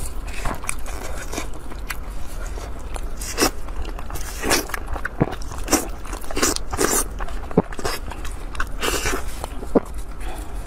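Close-miked eating of braised meat on the bone: irregular biting and chewing with sharp clicks and crackles, over a low steady hum.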